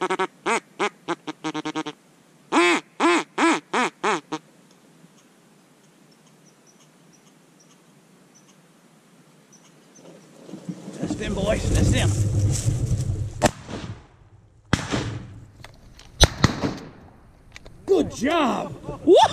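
Two quick runs of duck quacks, each a string of short, evenly spaced calls, in the first four seconds. After a quiet spell come rustling and then three sharp shotgun shots about a second apart near the end, the last the loudest.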